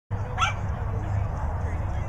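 A dog gives one short, high, rising yip about half a second in, typical of an excited agility dog at the start line, over steady low outdoor rumble and faint voices.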